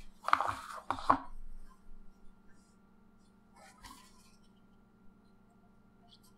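Brief handling sounds of small parts and a cardboard parts box being picked up in the first second or so, then a faint rustle about midway. Otherwise it is quiet room tone with a steady low hum.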